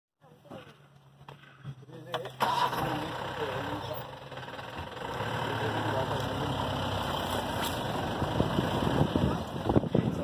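A vehicle engine running, a steady low hum at first that turns louder and rougher about two and a half seconds in and stays that way, with people talking quietly over it.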